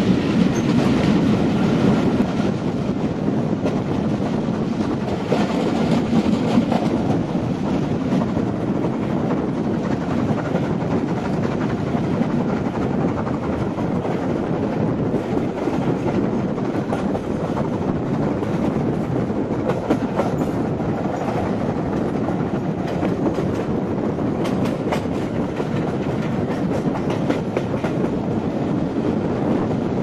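A steam-hauled passenger train's coaches rolling along the track, wheels clattering steadily over the rail joints. Sharper clicks come in a cluster over the second half.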